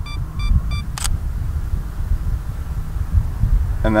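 Camera on a tripod beeping rapidly and evenly, the typical countdown of a 2-second self-timer, then the shutter clicks once about a second in. A low rumble of wind on the microphone runs underneath.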